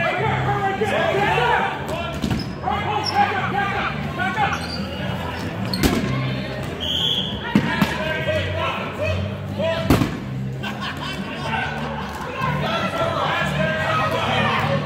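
8.5-inch rubber dodgeballs hitting the hardwood gym floor and walls: several sharp hits, the loudest about ten seconds in. Players' voices and background music with a steady bass run under them.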